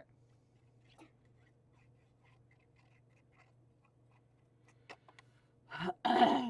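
Faint rustling, scratching and light ticks of paper being handled and glued onto card, with a small click about a second in. A cough starts just before the end.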